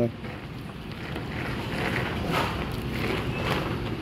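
Steady low rumbling noise of a workroom, with faint irregular rustling and clicking as hands stir and sort cashew kernels in a plastic basket.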